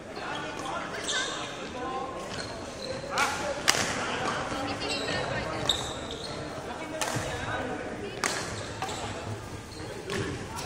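Voices talking in a large, echoing sports hall, with four sharp smacks, the loudest a little under four seconds in.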